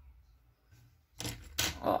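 Very faint room tone, then brief rustling and clicking handling noises about a second in, as hands work thread through a button on a crocheted shoe.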